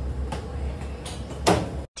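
Steady low hum of a commercial kitchen with two sharp knocks, a faint one early and a loud one near the end; the sound cuts off suddenly just before the end.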